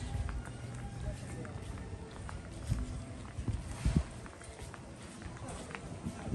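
Footsteps of someone walking on stone paving, heard as irregular low thuds close to the microphone, over indistinct background voices and faint music.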